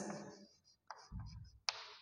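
Chalk writing on a blackboard: faint scratching strokes with a sharp tap of the chalk near the end.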